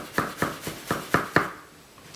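Chef's knife slicing garlic on a cutting board: quick, even knocks of the blade on the board, about four a second, stopping about a second and a half in.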